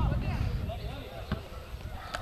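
Distant shouting voices of rugby players calling during play, fading over the first second, with one sharp knock about a second and a half in.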